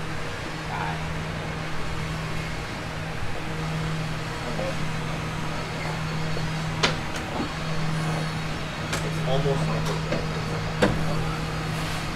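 A steady low hum, with two sharp clicks about four seconds apart and faint voices in the second half.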